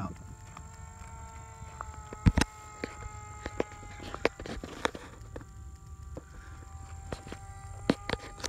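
Electric motor of an E-flite Timber RC model plane whining steadily at low throttle as it taxis, with scattered clicks and knocks, the loudest a little past two seconds in.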